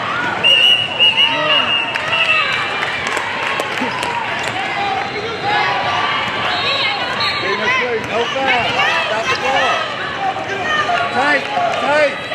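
Basketball game in a large echoing hall: many short sneaker squeaks on the hardwood court, a ball bouncing, and players and spectators talking and calling out.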